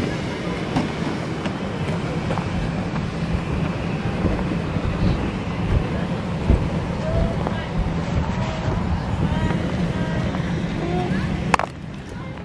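Wind noise buffeting a handheld phone microphone while walking, over a steady low hum and a few faint, distant voices. A sharp click comes just before the end.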